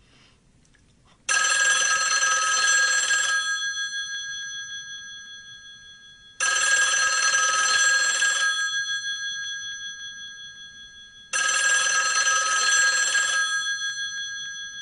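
Telephone bell ringing three times, about five seconds apart. Each ring is a two-second trill that then lingers and fades away.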